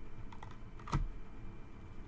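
Tarot cards being handled: a few light clicks and snaps of card stock, the sharpest about a second in.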